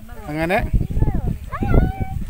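People talking, with a high, gliding voice near the end.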